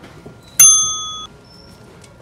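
A single loud bell-like ding about half a second in, its ringing fading for well under a second and then cutting off suddenly. Faint store room noise underneath.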